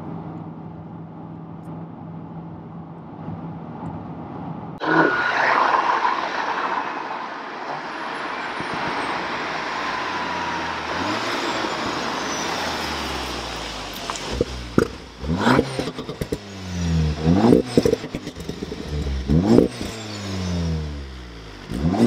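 A Volkswagen Golf R Mk7.5 drives past on a wet road, a sudden rush of engine and tyre noise about five seconds in that fades away. Then its turbocharged 2.0-litre four-cylinder, heard at the quad exhausts, is blipped several times, about every two seconds, each rev rising and falling quickly.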